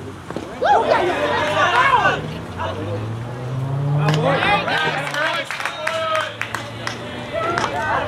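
Several voices shouting and calling out on a baseball field while a ball is in play, loudest about a second in and again around four seconds in.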